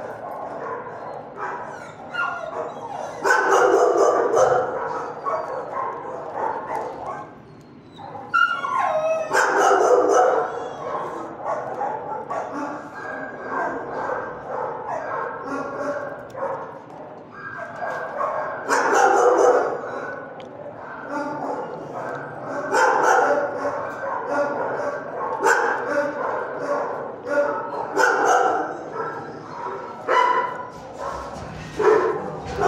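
Dogs barking and yipping in a shelter kennel block, in repeated loud bouts with quieter barking between them.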